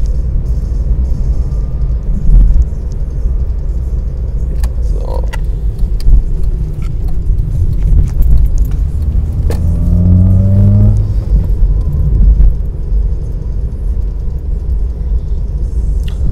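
Car cabin noise while driving at around 45 km/h: a deep steady rumble of engine and road. About ten seconds in, the engine note rises in pitch for a second or so before settling back into the rumble.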